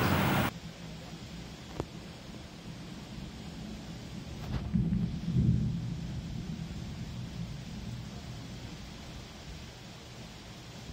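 Thunder rumbling low, swelling about four and a half seconds in and slowly dying away. Before it, a loud rushing noise cuts off suddenly half a second in.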